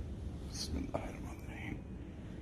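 A brief whisper, a hissed sound followed by a few soft words, over a steady low room rumble.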